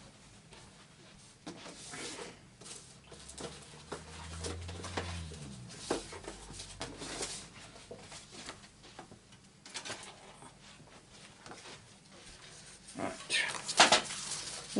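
Scattered rustles, taps and clicks of someone handling craft materials and searching for a piece of card, with a brief low hum about four seconds in and louder clatter near the end.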